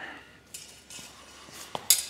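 Metal parts clinking lightly a few times, the last and loudest clink near the end.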